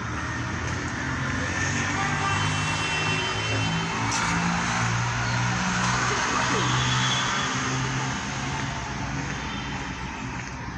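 City street traffic: a motor vehicle's engine running close by over the general hum of traffic, louder in the middle.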